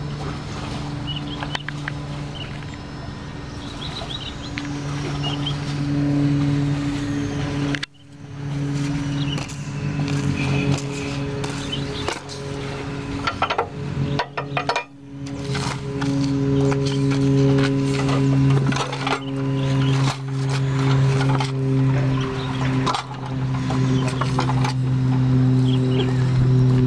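Single-cylinder diesel engine of a walking tractor (Kubota RD85DI-1S type) running at a steady speed. The sound briefly drops out twice, about eight and fifteen seconds in.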